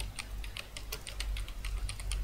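Computer keyboard typing: a quick run of key clicks, about five a second, over a low steady hum.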